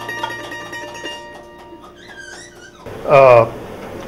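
The final chord of a bluegrass band ringing out and fading, with mandolin, acoustic guitar and banjo strings sustaining over the first second or two. Near the end a short, loud spoken voice cuts in.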